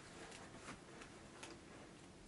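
Near silence with a few faint, short ticks, irregularly spaced.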